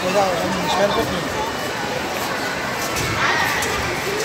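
Children's voices and adult chatter mixing in a busy play area, with a child's higher-pitched voice a little after three seconds in.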